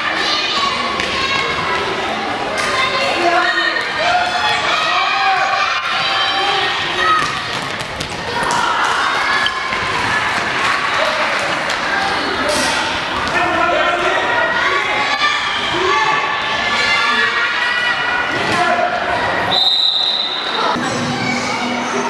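Echoing sports-hall din of a youth handball game: children's and spectators' voices calling out over the thud of the handball bouncing on the hall floor. Near the end comes one steady high blast of a referee's whistle.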